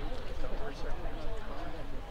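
Indistinct chatter of several voices overlapping, with a steady low wind rumble on the microphone.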